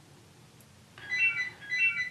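Telephone ringing with an electronic ringtone: after about a second of quiet, two short ring bursts.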